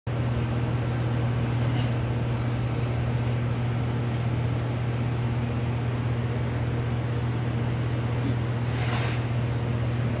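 A steady low machine hum with no change in level, and a brief rustle near the end.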